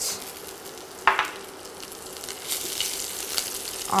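Slit green chillies hitting hot oil with whole spices, sizzling in the pan, with a short knock about a second in; a spatula then stirs them, and the sizzle crackles more from about halfway.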